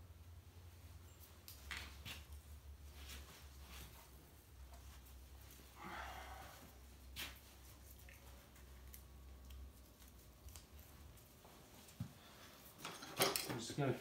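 Quiet hand-working of a red fox pelt on a hanging carcass: scattered faint clicks and soft rustles over a low steady hum, with one sharper knock about twelve seconds in.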